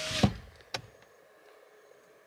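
A small electric motor's steady whine stops with a thump just after the start, a single sharp click follows, then near silence.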